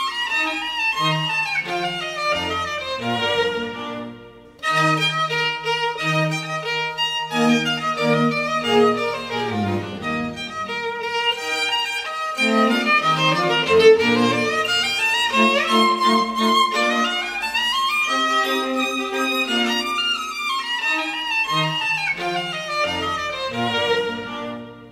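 Background music led by a violin, with quick rising and falling runs over lower accompanying notes. It breaks off briefly about four and a half seconds in.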